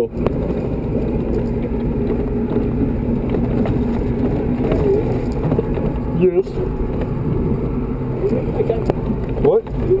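LMTV military truck's diesel engine running steadily while the truck drives over dirt, a constant low drone mixed with road and rattle noise heard from inside the cab. A few brief words cut in about six seconds in and near the end.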